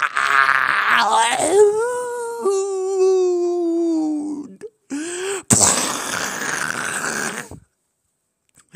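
A voice groaning and wailing in long, drawn-out cries whose pitch slides down, then, after a short break, a harsh, rasping straining noise for about two seconds that cuts off near the end. It is acted screaming and straining.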